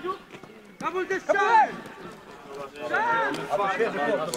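Men shouting during play on a football pitch, in two bursts: one about a second in and another near the end.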